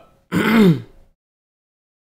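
A man's short throat-clearing grunt about half a second in, then the sound cuts to complete silence.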